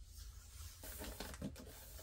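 Faint rustling and a few light ticks of a paper sticker being handled and pressed onto the side of a cardboard pizza box.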